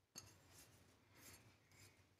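Near silence, with faint light scrapes of fingers wiping ground spice off a small ceramic plate.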